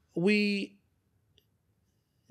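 Speech: a man draws out the word 'we', then pauses in near silence, broken by one faint click partway through the pause.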